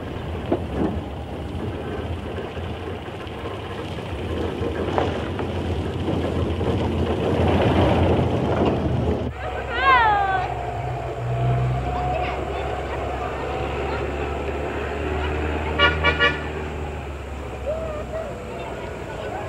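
Car horn sounding over the noise of a car driving on a hill road: one long falling-then-steady note about ten seconds in, and a quick run of short toots near the end.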